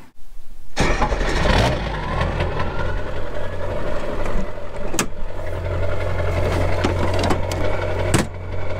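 Pickup truck engine heard at its tailpipe, starting about a second in, rising briefly, then settling to a steady idle. A single sharp click comes about five seconds in.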